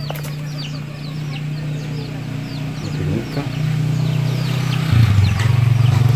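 A steady low engine hum that grows louder about halfway through and again near the end, with birds chirping over it in quick short falling notes.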